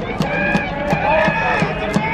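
Cheering section in the stands chanting together over a steady drum beat of about three strokes a second.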